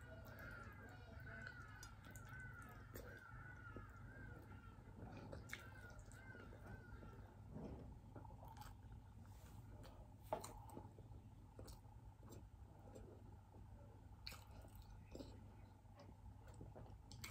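Quiet eating by hand: soft chewing and small clicks of fingers on food and plate, close to near silence. A faint high warbling call repeats about twice a second through the first half, then stops.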